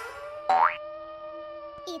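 Intro jingle: a held electronic note sounds throughout, and about half a second in a quick, loud rising cartoon 'boing' sound effect cuts across it. A voice comes in at the very end.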